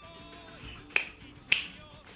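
Two sharp finger snaps about half a second apart, over quieter rock music from an anime opening song.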